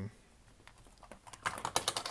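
Bic Wite-Out EZ Correct tape dispenser drawn across paper, a quick run of small clicks lasting about a second as the tape feeds out and covers the writing.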